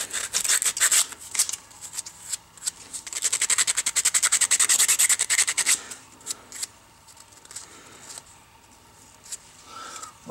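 80-grit sandpaper rubbed quickly back and forth by hand over a small 3D-printed PLA part, a fast run of short scratchy strokes. The strokes come in two spells and stop about six seconds in.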